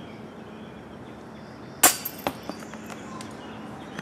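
A disc golf putt striking the metal chain basket with one loud clank about two seconds in, followed by a couple of lighter clinks as the disc rattles off. The birdie putt does not stay in.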